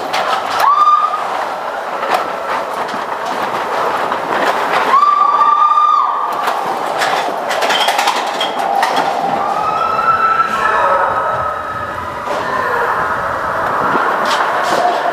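Matterhorn Bobsleds roller-coaster sled running along its track: a steady rattling rumble with many sharp clacks. Two high, held squeals come about a second in and again about five seconds in.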